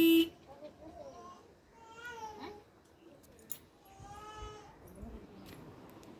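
A brief loud steady tone at the very start, then three short high-pitched cries, each rising and falling in pitch, about a second and a half apart.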